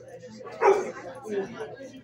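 A dog barks once, loud, a little over half a second in, over background voices.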